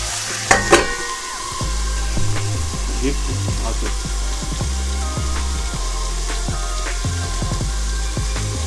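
Food frying in a pan, a steady sizzle, with two sharp clicks about half a second in.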